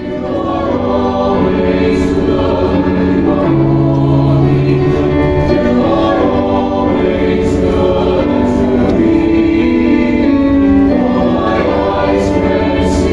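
A choir singing a hymn, several voices together on slow, held notes.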